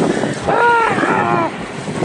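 A long drawn-out yell from a rider on a towed tube, held and wavering, then falling away, over the rush of water and wind.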